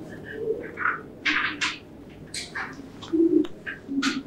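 Dry-erase marker writing on a whiteboard: a quick, irregular run of short scratchy strokes and squeaks. A few brief low tones come in between them, the loudest a little after three seconds in.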